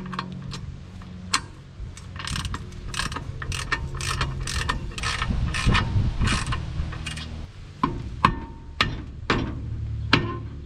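Socket ratchet clicking in quick, irregular runs as anti-seize-coated bolts are run in to fasten a drum-brake backing plate to the front spindle.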